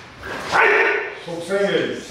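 A man's short, loud shout about half a second in, followed by a few words of speech near the end.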